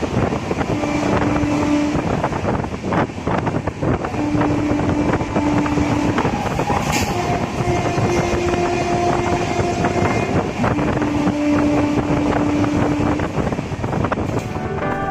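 Express passenger train running at about 100 km/h, heard from inside a coach: steady wheel and rail rumble with clattering over the rail joints. Over it come about four long, steady horn blasts as the train runs through the station.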